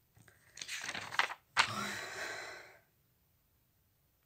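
A woman's breathing close to the phone microphone: a rough intake of breath, then a sharp click and a long exhale that fades out just before three seconds in.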